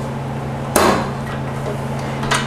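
A single sharp knock about three quarters of a second in as the metal bowl or tilting head of a KitchenAid stand mixer is set in place, over a steady low hum.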